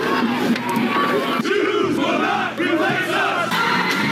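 Crowd of people yelling and shouting over one another during a street fight, many voices overlapping at a loud, steady level.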